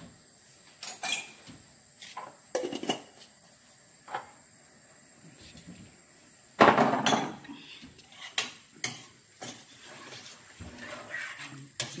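Cooking utensils clinking and knocking against a steel cooking pot on a gas hob: a scattering of sharp taps, with a louder, longer clatter about halfway through.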